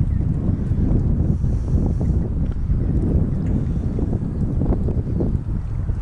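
Wind buffeting the microphone: a loud, irregular low rumble throughout.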